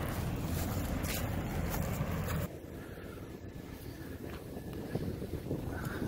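Wind buffeting the phone's microphone, a low rumble that drops away suddenly about two and a half seconds in.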